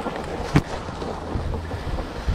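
Wind noise on the microphone and skis sliding over packed, groomed snow as a skier pushes off down the slope, with one sharp knock about half a second in.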